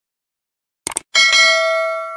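Two quick mouse clicks, then a bright notification-bell ding that rings on and slowly fades. These are sound effects for a subscribe button being clicked and its notification bell turned on.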